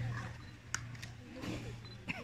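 Faint voices of a crowd of children, with a low steady hum that fades early and a single sharp click under a second in.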